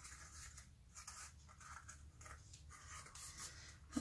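Faint rustling and soft scraping of accordion-folded paper being handled and pressed together.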